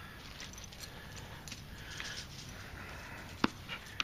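A dog moving about quietly on dry grass during play, with one sharp click near the end.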